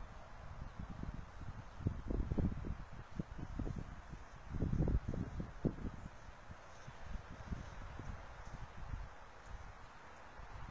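Wind buffeting a handheld camera's microphone: irregular low rumbling gusts, strongest about two seconds in and again about five seconds in.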